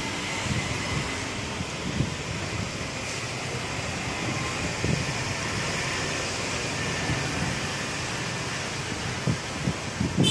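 Steady city background noise, the hum of distant road traffic, with a few brief low thumps.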